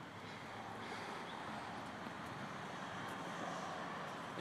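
Steady, faint outdoor background noise: an even hiss with no distinct events and no clear engine tone.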